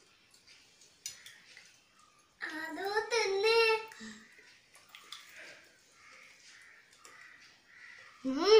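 A young child's voice, drawn out and sliding in pitch, for about a second and a half near the middle, between faint clicks of steel spoons against a plate.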